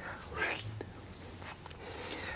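A man's soft, breathy vocal sound, whispered rather than voiced, about half a second in, then quiet room tone.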